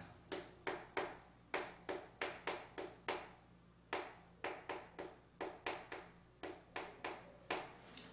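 Chalk writing on a blackboard: a quick series of short taps and strokes, about three a second, with a brief pause a little after three seconds in.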